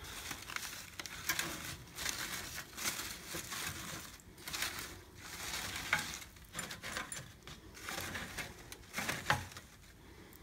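Artificial flowers and leafy stems rustling and crinkling in irregular bursts as hands push and rearrange them.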